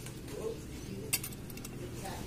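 Light metallic clinks of an aluminium motorcycle clutch cover being handled, with one sharp click a little past halfway, over a faint steady hum.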